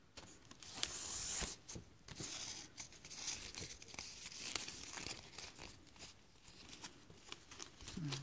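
Strips of palm leaf rustling and crackling as they are pulled and fed through the weave, in irregular bursts of scraping with small clicks, thinning out near the end.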